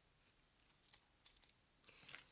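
Near silence with a few faint, light clinks of small metal jewelry pieces being handled, around the middle and near the end.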